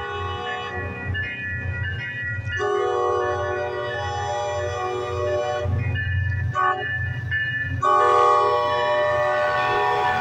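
Horn of the MBTA F40PH-3C diesel locomotive sounding the grade-crossing signal as it approaches. A long blast ends about a second in, another long blast follows, then a short one, then a final long one held past the end. A low rumble from the locomotive runs underneath.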